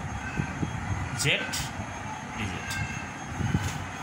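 Marker pen scratching and squeaking on a whiteboard as a short expression is written, over a steady low rumble.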